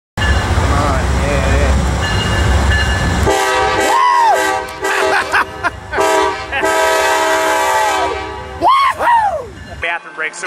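Amtrak diesel locomotive arriving, sounding its multi-note horn in several blasts, the longest about two seconds, after about three seconds of heavy low rumble. Onlookers whoop over the horn.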